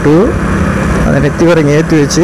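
Motorcycle engine running steadily while the bike is ridden along a road, under a man's talk.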